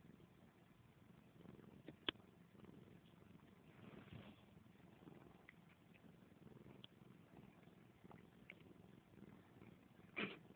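Domestic cat purring faintly right at the microphone, a low steady rumble, with one sharp click about two seconds in.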